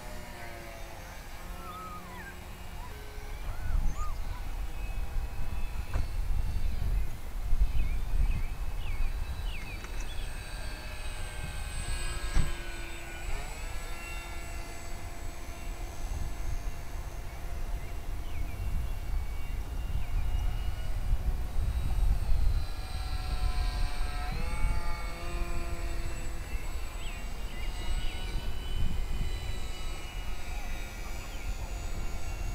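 Electric brushless motor and propeller of a small foam RC flying wing whining in flight, the tone dropping in pitch as the plane passes by, once around the middle and again about three-quarters in. A low, gusting rumble sits under it from a few seconds in.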